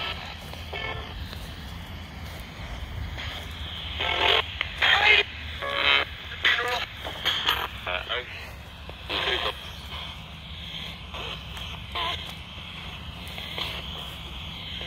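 Portable radio used as a ghost box, scanning through stations: short, chopped-up snatches of broadcast voices pop out over a steady hum and static hiss, most of them between about four and ten seconds in.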